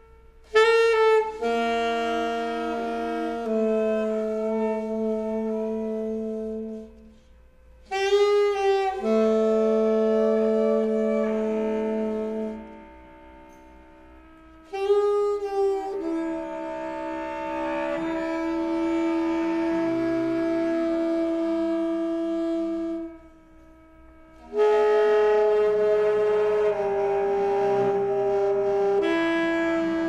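Alto saxophone and bowed cello playing held long tones together in an improvisation, in four phrases separated by short pauses. Each phrase opens with a wavering, bending note before settling into sustained pitches.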